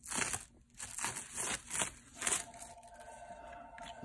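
Clear plastic wrap being peeled and torn off an axe head, crinkling and crackling in a series of short bursts.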